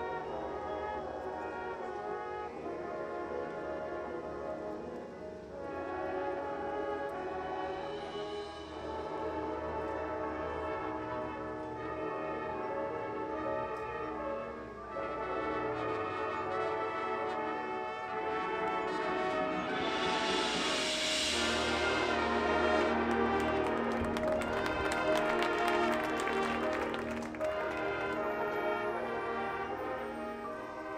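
High school marching band playing its field show: brass sustaining full chords over percussion. The music builds to a loud climax about two-thirds of the way in, with a cymbal crash followed by a run of sharp percussion hits, then eases back near the end.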